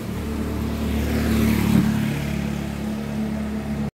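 Motor scooter engine running, growing louder to a peak about a second and a half in, then holding steady. The sound cuts off suddenly just before the end.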